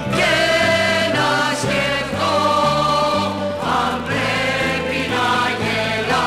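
A choir singing a song with instrumental accompaniment, over a bass line that steps from note to note.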